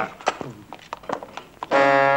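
A few light knocks and clicks, then near the end a loud brass chord from the film score starts up and is held.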